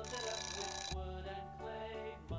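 A bright electronic ring, like a bell or alarm tone, sounds for about the first second, marking the end of a countdown timer. Light background music continues throughout.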